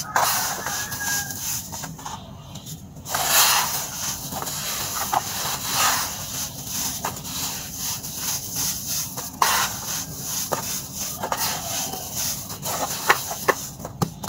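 Hands scooping and crumbling clumpy dry red dirt in a tub: a steady gritty rustling crunch, broken by many sharp little crackles as the lumps break and fall. The sound lulls briefly about two seconds in, then picks up again.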